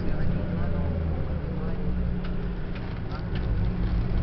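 Car driving slowly along a street, a steady low rumble of engine and road noise.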